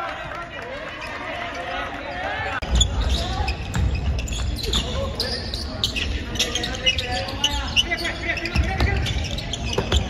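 Players' voices in a gymnasium, then, about two and a half seconds in, a basketball bouncing repeatedly on the hardwood court during play, with shouts among the players.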